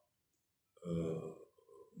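A man's drawn-out hesitation sound, "eh", about a second in, trailing off faintly.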